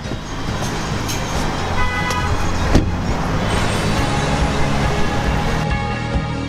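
Road traffic noise, a steady rumble, with a short high tone about two seconds in and a sharp click near three seconds. Music comes in toward the end.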